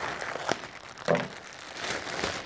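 Thin plastic vacuum-seal bag crinkling as it is cut open with scissors and handled, with a sharp click about half a second in.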